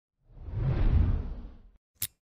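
Whoosh sound effect for a logo reveal: a deep, swelling rush that builds and fades over about a second and a half, then a brief sharp hit right at the end.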